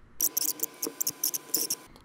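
A quick run of about a dozen short, scratchy, rustling sounds over roughly a second and a half, stopping shortly before the end.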